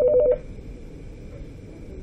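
Desk telephone ringing with a fast warbling two-tone trill. The ring cuts off about a third of a second in, leaving quiet room tone.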